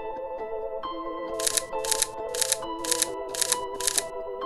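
Camera shutter firing six times in quick succession, about two shots a second, over background music.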